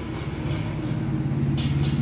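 A vehicle engine running steadily, a low rumble that grows slightly louder, with a brief hiss near the end.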